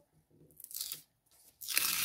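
Paper flap of a handmade advent-calendar cell being torn open by hand. A short tear comes about half a second in, then a longer, louder rip near the end.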